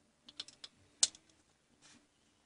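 Small metallic clicks from a screwdriver working a screw in a small aluminium heatsink: a few light ticks, then one sharp click about a second in.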